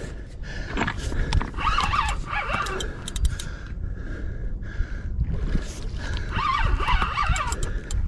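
Penn spinning reel being cranked against a hooked paddlefish, under a low rumble of wind on the microphone. Two short spells of high wavering calls come about two seconds in and again about seven seconds in.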